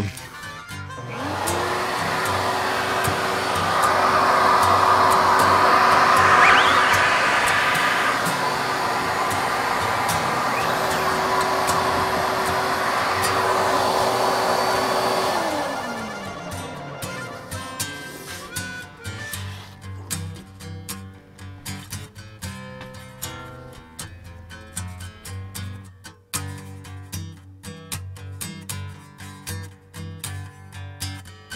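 An electric blower motor starts about a second in, spinning up to a steady rushing whine, then is switched off around the middle, its pitch falling as it coasts down. Acoustic blues guitar music plays underneath and carries on alone afterwards.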